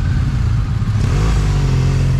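Motorcycle engines running at a standstill, with one engine speeding up about a second in and holding at the higher pitch.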